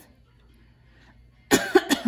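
A woman coughing, a short burst of two or three coughs about a second and a half in.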